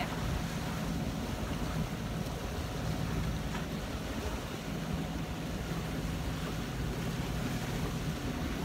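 Steady wind and water noise aboard a sailboat underway at sea, with a low, steady hum beneath it.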